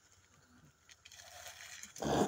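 Faint rustling of dry branches as an elephant strips leaves from a bush with its trunk. The rustle grows in the second half, with a few light clicks of twigs.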